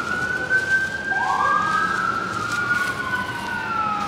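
Emergency-vehicle siren wailing: the pitch sweeps quickly up and then sinks slowly, over and over, with the sweeps overlapping.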